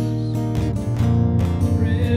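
A song's instrumental passage: a nylon-string classical guitar strummed, with sustained chords and low notes and no voice.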